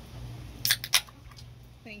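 Two sharp metallic clicks about a quarter of a second apart, from an aluminium drink can being handled on the table.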